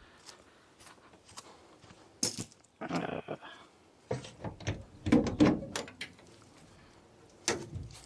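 Scattered metal clunks and knocks as the parking-brake drum on a 1959 Ford F-850 cab-over's driveline is turned and rocked by hand, with a busier spell of knocking in the middle.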